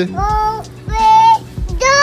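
A young child's high voice calling out twice: a short rising call near the start, then a longer held note about a second in.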